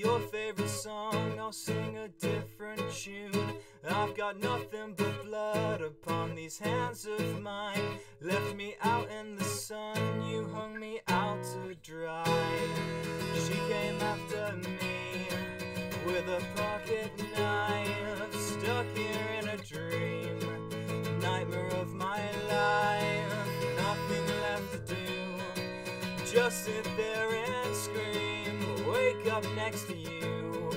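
Acoustic guitar strummed in an instrumental passage of a song: short, choppy strokes at about two a second for the first ten seconds, a brief break, then full strummed chords that ring on.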